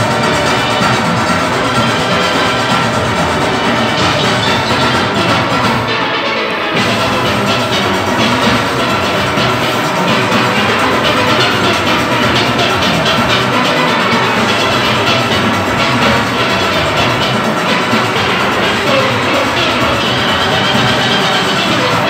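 Full steel orchestra playing: massed steelpans from high tenors down to bass pans, with a drum and percussion rhythm section, loud and continuous. The bass briefly thins out about six seconds in.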